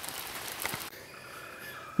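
Steady hiss of light rain falling outdoors. It cuts off suddenly about a second in, leaving only fainter background noise.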